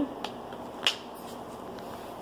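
A single sharp click about a second in, with a few fainter ticks, over a faint steady room hiss: handling noise from equipment being moved.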